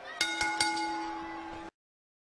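A boxing-ring bell sound effect struck three times in quick succession, ringing on after the strikes and then cut off abruptly, signalling the start of a round.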